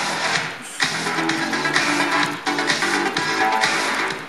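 A music track playing back through Ford's SYNC (MyFord Touch) infotainment system, started by a voice command.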